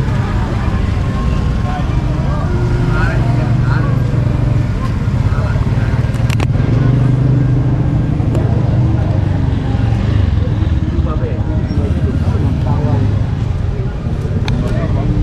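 Busy outdoor market ambience: a steady low rumble with background voices, and one sharp click about six seconds in.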